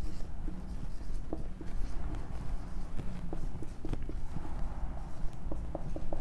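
Marker pen writing on a whiteboard: scattered light taps and short scratching strokes, over a steady low room hum.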